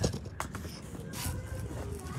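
Quiet handling noise as a phone is set in place outdoors: a low rumble of rustling with a faint click about half a second in.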